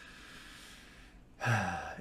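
A soft sigh, a long breath let out, followed about a second and a half in by a man's voice starting to speak.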